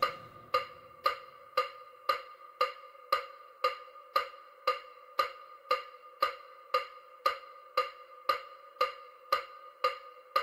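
A short, ringing, wood-block-like tone repeating at an even pace, about two strikes a second: the steady beat of an EMDR bilateral-stimulation track.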